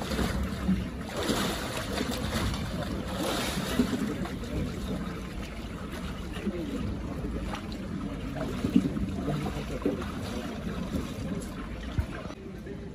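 Water splashing as a man swims through a cold plunge pool, with the louder splashes in the first few seconds, then a quieter sloshing as he wades through the waist-deep water. Faint voices of onlookers underneath.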